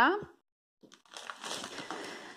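Plastic sweets bag and cellophane-wrapped toffees crinkling as they are handled and spilled onto a table, starting about a second in.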